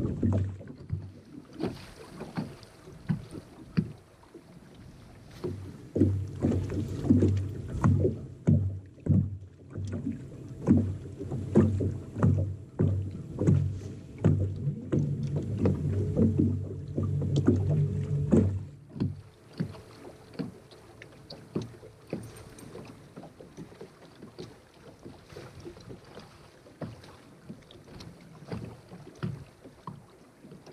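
Small waves slapping irregularly against the hull of a bass boat, while a bow-mounted electric trolling motor hums steadily from about six seconds in until it cuts off about two-thirds of the way through.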